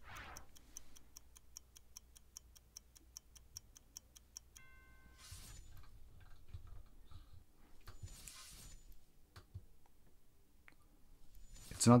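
Rotary volume knob on an S.M.S.L D-6s DAC being turned, its detents giving a rapid, even train of small clicks, about five a second, for the first four seconds or so. Later come a brief faint tone and two short soft hisses.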